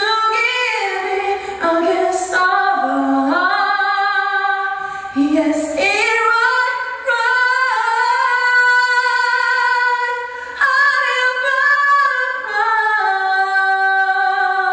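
A woman singing solo and unaccompanied into a handheld microphone, in full voice. In the middle she holds one long high note for about four seconds before moving on through shorter phrases.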